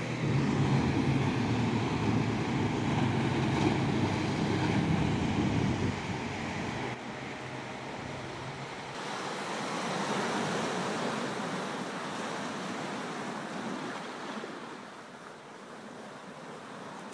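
Ocean inlet ambience: a steady wash of moving water and wind on the microphone, with a heavier low rumble for the first six seconds. It then drops off and eases lower near the end.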